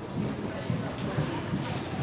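A pony's hoofbeats cantering on an arena's sand surface, in a steady rhythm, with voices in the background.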